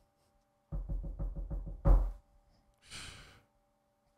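A quick run of knocks on a desk by hand, about six a second for a second and a half, the last one loudest, followed by a short breathy exhale.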